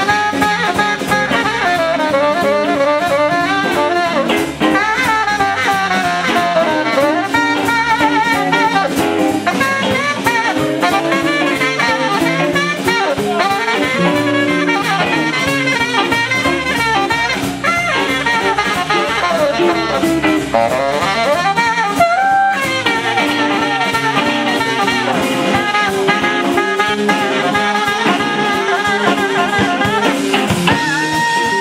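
Tenor saxophone playing a long, busy blues solo over a live band's bass and drums.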